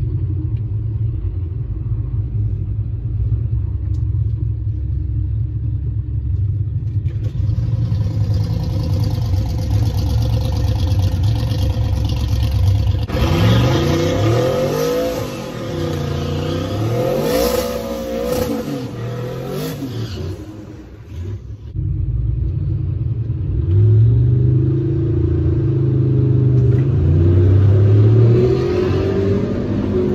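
Duramax turbodiesel pickup engine heard from inside the cab: it runs steadily at first, then is revved up and down repeatedly for several seconds in a burnout before the drag-strip launch. Near the end it is held at high steady revs.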